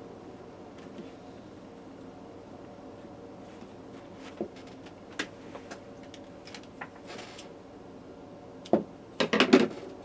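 Handling noise of a cotton T-shirt being tied off with kite string: faint rustling and small clicks, then a short cluster of louder knocks and rustles near the end as the tied shirt is set down on the table.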